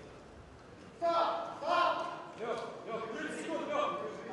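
About a second of quiet hall ambience, then a man's voice talking or calling out in a large hall, in short phrases, until the end.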